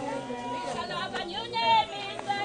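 Several people talking over one another: crowd chatter with no single clear voice.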